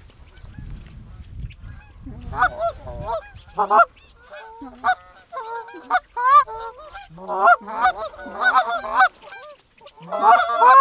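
A flock of Canada geese honking, the calls sparse at first, then growing more frequent and overlapping into a chorus as the flock comes in. A low rumble in the first few seconds.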